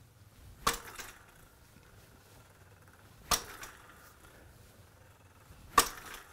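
Tennis racket strings striking a tennis ball mounted on a Topspin Pro forehand training aid: three sharp hits about two and a half seconds apart, each followed by a short faint tail.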